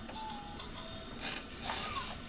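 Fisher-Price Jumperoo baby jumper's electronic toy tune playing in short notes, with a rattling burst just over a second in.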